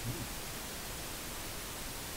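Steady hiss of a recording's noise floor, even across low and high pitches, with one brief low sound just after the start.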